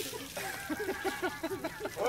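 People laughing: a quick run of short laughs from a few voices.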